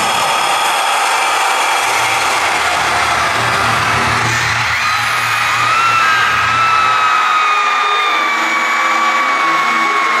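Live concert music over an arena sound system, recorded on a phone among the crowd, loud and steady. About five seconds in a long held high tone comes in and slides slowly down in pitch, and the deep bass drops out around seven seconds.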